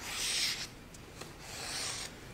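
Two soft rubbing swishes from hands moving on the lectern top close to the microphone: one at the start and one near the end, each under a second.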